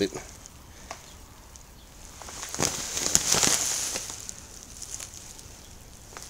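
Clear plastic bag of crushed malted grain crinkling and rustling as it is handled, with the grain shifting inside. It swells up about two seconds in and fades out by about four and a half seconds.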